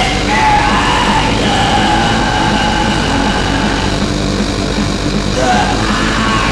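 Raw black metal from a lo-fi cassette demo: a loud, steady, dense wall of distorted sound with long held high notes running through it.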